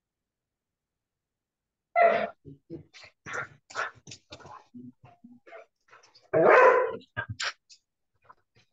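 A string of short, irregular vocal sounds starting about two seconds in, with loud bursts at its start and near the end.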